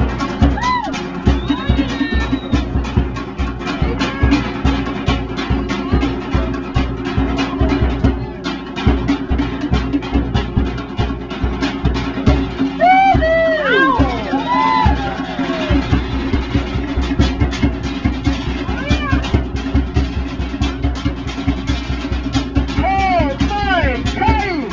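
Fast, driving Polynesian-style drumming with music, the beats coming several a second. High whooping calls rise and fall over it about halfway through and again near the end.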